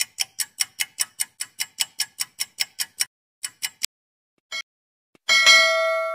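Countdown-timer sound effect: a clock ticking quickly, about five ticks a second, which stops after about three seconds. A few last ticks and a short blip follow, then a bell-like ding rings out near the end, marking time up.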